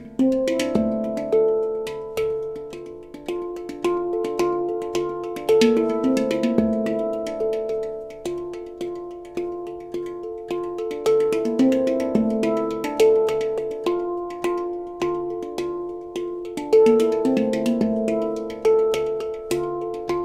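Handpan played with the hands: a flowing run of struck steel notes that ring on and overlap as they decay, with light sharp taps between them.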